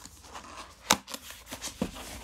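Cardboard packaging being opened by hand: the card scrapes and rustles, with one sharp click about a second in and a few lighter ticks after it.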